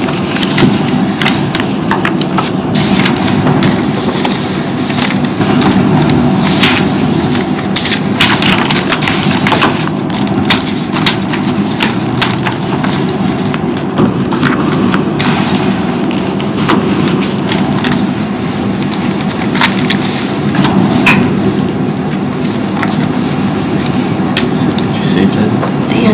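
Indistinct low murmured talk and a steady low room rumble, with scattered clicks and rustles of papers being handled.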